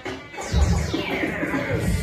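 Electronic dance music from a DJ mix with a kick-drum beat. The beat dips briefly at the start, then a sweeping effect falls in pitch from about half a second in.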